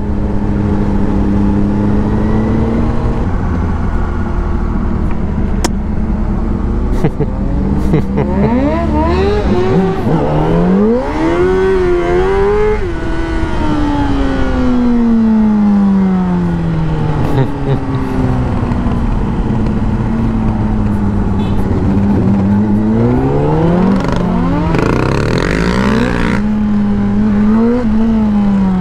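2005 Honda CBR600RR inline-four with a Yoshimura exhaust and removed catalyst, heard from the rider's seat. It runs at steady revs, then rises in pitch under acceleration about ten seconds in. The revs fall slowly for several seconds as the throttle is closed, and two shorter rises and falls come near the end.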